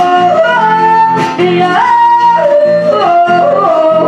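A woman singing a melody of long held notes that slide from one pitch to the next, accompanied by a strummed acoustic guitar.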